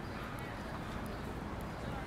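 Footsteps clicking on a concrete sidewalk over the steady hum of city street traffic.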